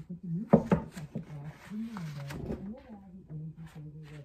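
A muffled, voice-like sound plays from inside a simulated wall section, heard through rock wool, silicone and two layers of drywall. About half a second in come a few sharp knocks as the top drywall sheet is set down and pressed onto the frame.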